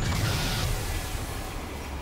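Sound-effect whoosh from an end-title sting: a sudden loud rushing noise with a low rumble, fading over about a second and a half, and a steady low drone underneath near the end.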